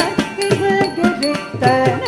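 Carnatic music accompanying Bharatanatyam dance: a gliding, ornamented melody line over quick, sharp percussion strokes.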